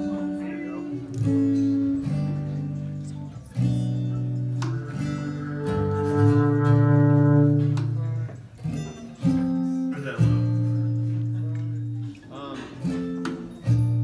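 Acoustic guitar strumming single chords and letting each ring for a second or more before the next, trying the song out in the lower key of D before it is played through.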